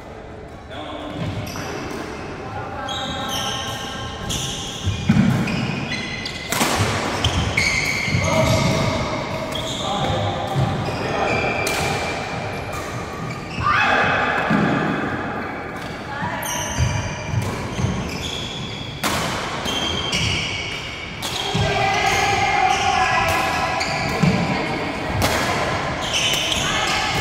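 Badminton rally: rackets striking the shuttlecock in sharp cracks every second or few, with shoe footfalls and squeaks on the wooden court floor.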